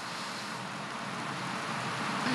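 Steady, low room tone: an even background hiss with no distinct event.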